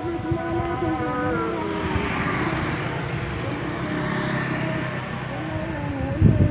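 A small motorcycle engine runs close by, its pitch sagging slowly over the first few seconds. A passing rush swells about two seconds in, over a steady low rumble.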